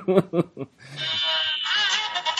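A short laugh, then about a second in recorded music starts playing: held, wavering notes with many overtones.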